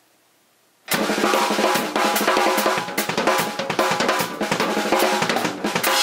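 Drum kit played hard and fast, with dense kick, snare and tom strokes under cymbals, starting abruptly about a second in after near silence.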